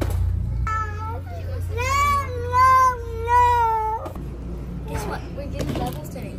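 A young child's high-pitched, drawn-out whining cries, three or four long wavering notes over about three seconds, ending about four seconds in.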